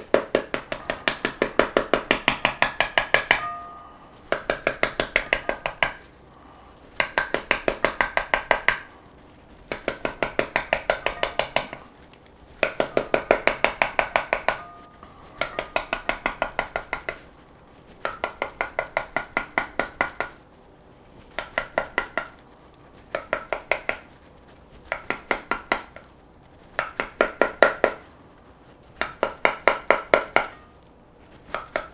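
A metal utensil smacking the rind of a half pomegranate held over a glass bowl, knocking the seeds out. The taps come in quick runs of about five a second, each run lasting about two seconds, with short pauses between them.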